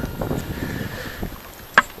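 Dry field soil scuffed and crumbled as it is kicked aside with a foot and worked by a gloved hand, under wind rumbling on the microphone, with one sharp click near the end.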